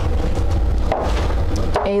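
Small items being handled and set down on a table: soft knocks and rustling over a steady low rumble.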